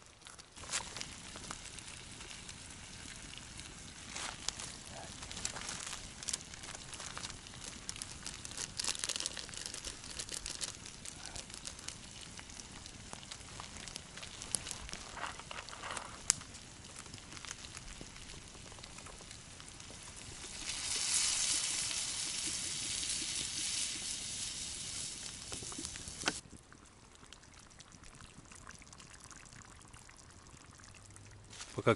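Small wood fire crackling with scattered pops, then water poured from a plastic bottle: a steady rushing hiss for about five seconds, the loudest sound here, that stops suddenly.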